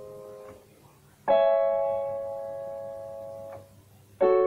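Electronic keyboard on a piano voice playing slow, held chords: a chord that is still ringing is let go about half a second in, then a new chord is struck just after a second, held and slowly fading, and let go near the end.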